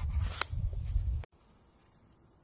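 Low rumble and rustle of a phone being handled and swung round outdoors, with a sharp click just under half a second in. It cuts off abruptly a little over a second in, leaving only faint background hiss.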